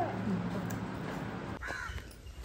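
A single short bird call about one and a half seconds in, after low steady room noise.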